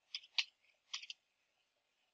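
Computer keyboard keys clicking as text is typed: about five sharp keystrokes in quick, uneven succession, stopping a little after a second in.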